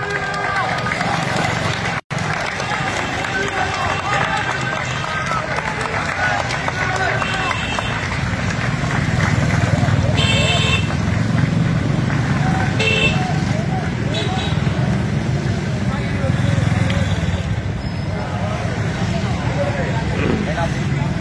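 Outdoor street sound: people's voices over a steady rumble of vehicle engines, with a couple of short high-pitched tones around the middle.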